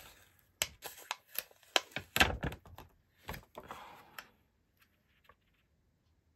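Clear photopolymer stamps being peeled off and handled on their plastic carrier sheet: irregular clicks, taps and crinkles of thin plastic, with a heavier knock about two seconds in and another about three seconds in, then a short rustle.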